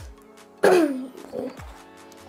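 A person clears his throat once, a short loud burst falling in pitch, over quiet background music.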